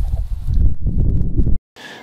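Wind buffeting an outdoor microphone, a loud, irregular low rumble, which cuts off abruptly about a second and a half in.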